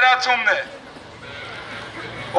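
A man shouting through a handheld megaphone. The amplified voice breaks off about half a second in and is followed by a pause of low background noise.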